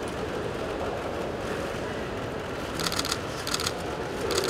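Two quick bursts of camera shutter clicks, each a rapid run of clicks, about three seconds in, over steady background noise.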